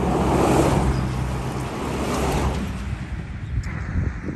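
A motor vehicle's engine hum and rushing road noise, swelling about half a second in and then slowly fading as it passes.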